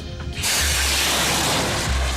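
Rocket motor firing: a loud, steady hiss of exhaust that starts about half a second in, over background music with a steady bass.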